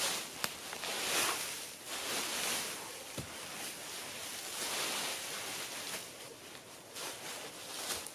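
Dry leaves rustling and crunching as a person crawls out through a leaf-stuffed debris hut, swelling about a second in and again around five seconds in, with a few sharp snaps of twigs.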